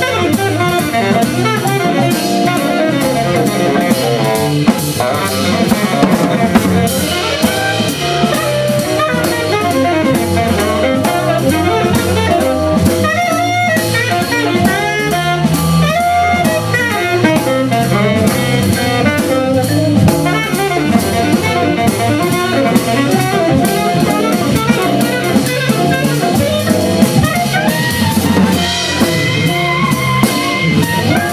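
Live jazz-blues band playing: Hammond XK-1 organ with organ bass, drum kit, and tenor saxophone and trombone.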